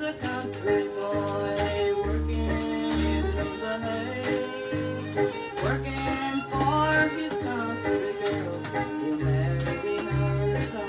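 Hillbilly country music playing from a 7-inch record on a turntable: a fiddle carries sliding melody lines over guitar and a steady, pulsing bass.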